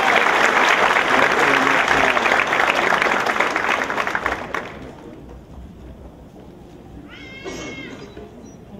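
Audience applauding in a theatre, dying away about five seconds in. Near the end there is one brief high-pitched call.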